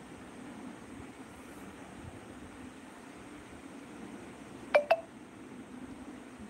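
Two short electronic beeps in quick succession about three-quarters of the way through, over a steady low room hum.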